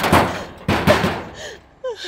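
Two loud bangs on a metal gate, about two-thirds of a second apart, each with a ringing tail, then a woman's short cry near the end.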